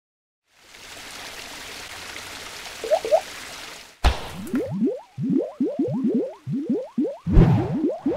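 Logo-intro sound effects: a steady hiss builds for about three seconds, then a sharp hit at about four seconds sets off a rapid string of liquid, drip-like bloops that slide upward in pitch, with heavier splat hits near the end.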